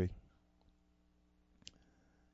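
A man's voice trails off at the end of a word, then a faint steady electrical hum and a single short click about one and a half seconds in.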